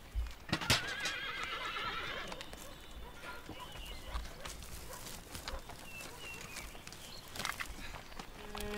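A horse whinnies once, a wavering call about a second in, with a few sharp knocks around it, the loudest just before the whinny.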